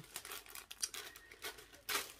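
Small plastic packaging pouch crinkling and crackling in irregular bursts as it is handled and opened, with a sharper crackle near the end.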